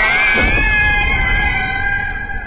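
A high-pitched scream that shoots up in pitch and is then held for about two seconds. A brief low falling sweep comes in beneath it about half a second in.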